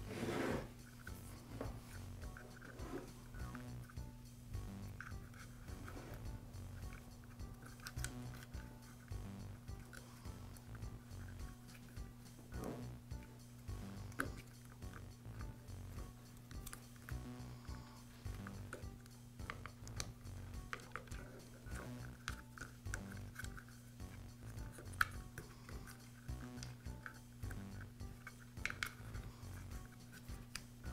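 Faint clicks and rustles of insulated wires and small plastic parts being handled and pushed down into a router's plastic motor housing, over a steady low electrical hum.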